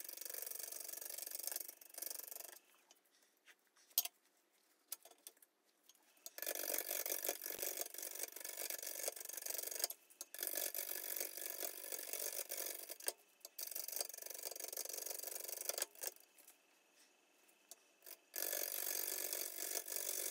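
A 5/8-inch bowl gouge roughing a large, out-of-balance green black walnut blank on a slow-turning wood lathe: an interrupted cut as the gouge knocks off the corners of the blank. The cutting comes in stretches of a few seconds and stops twice for a few seconds.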